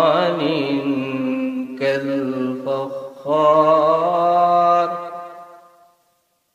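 A man reciting the Quran in Arabic in a melodic, chanted style, drawing out ornamented notes that slide up and down. The voice dips briefly about three seconds in, then rises into a long held phrase that fades out near the end.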